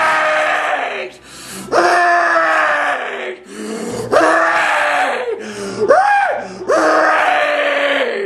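A man screaming: a string of five long, loud yells, each sliding down in pitch, with a short rising-and-falling cry between the last two.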